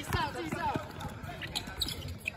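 A basketball being dribbled on an outdoor hard court, bouncing several times, with players' voices around it.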